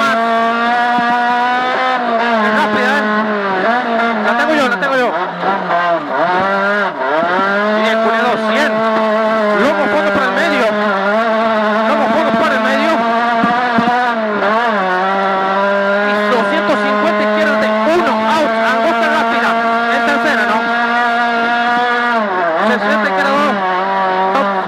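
Rally car engine at high, steady revs heard from inside the cabin at full speed on gravel. The pitch dips and climbs back several times, most deeply about five to seven seconds in and again near the end, as the driver lifts and shifts, with stones clicking against the underside.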